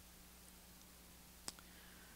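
Near silence: room tone with a faint steady hum and a single sharp click about one and a half seconds in.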